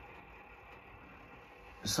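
Quiet room tone, a faint steady low hum with no distinct events; a man's voice starts just before the end.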